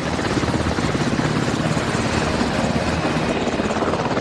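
Small two-bladed helicopter hovering just above a helipad, its engine and main rotor running steadily with a fast, even chop from the blades.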